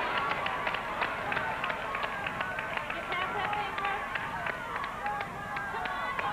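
The big prize wheel spinning, its flapper clicking against the pegs in a rapid run of ticks that gradually slows as the wheel winds down. Voices call out faintly over the clicking.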